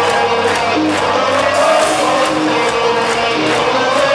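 A rock band playing live, with electric guitars, drums and singing, and crowd voices mixed in.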